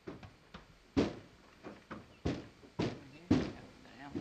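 A horse's hooves knocking on the floor of a horse trailer as it shifts and steps inside: about eight heavy, uneven thuds with a short ring after each, the loudest about a second in and near the end.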